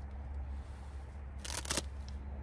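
A hook-and-loop patch pressed onto the loop panel of a nylon headrest bag, giving a brief crackly rustle about one and a half seconds in, over a steady low hum.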